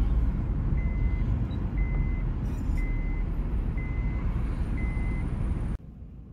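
Car interior road and engine rumble while driving, with a high electronic warning chime from the car beeping five times, about once a second. The sound cuts off abruptly near the end.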